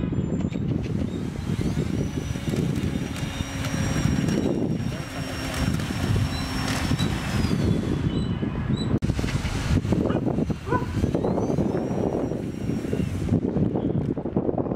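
Small electric motor and propeller of a homemade RC seaplane running, a thin high whine that rises and falls in pitch, over a steady low rumble. The sound breaks off abruptly a few times.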